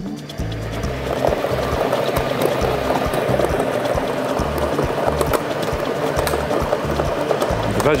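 Plastic lottery balls clattering as they tumble in two draw-machine drums, a dense continuous rattle of small knocks that starts just after the beginning and thickens about a second in. Background music with a steady bass beat runs underneath.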